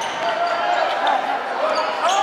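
Live basketball game sound on a hardwood gym floor: the ball being dribbled, with short squeaking tones and voices of players and spectators echoing in the gym.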